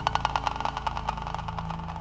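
Psytrance intro: a rapid, pulsing electronic synth sequence over a low sustained pad, the pulses smoothing into a held tone near the end.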